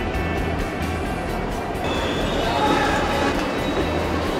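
Background music mixed with the noise of a train in a station: a steady low rumble and dense rushing noise, with some held tones coming in about halfway through.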